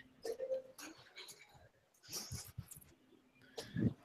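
Faint, broken snatches of a remote caller's voice over a video call, a few short garbled fragments with dropouts to silence between them: audio cutting out on a poor internet connection.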